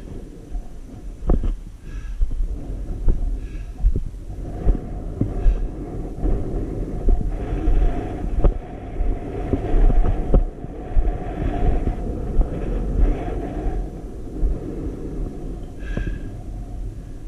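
Wind buffeting an outdoor camera microphone: a steady low rumble that swells in gusts, with a few scattered knocks.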